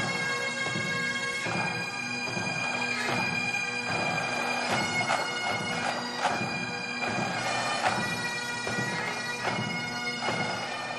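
Military pipe band bagpipes playing a tune, the steady drones held under the changing chanter melody.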